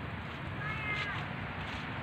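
Steady outdoor street background noise, with one short, high, slightly falling call lasting about half a second, a little after the start.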